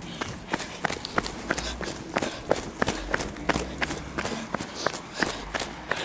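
Footsteps of a person running on a paved street, about three strides a second, over a low rumble.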